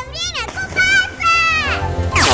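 A child's high voice making several short sliding cries without words, over background music with a steady beat.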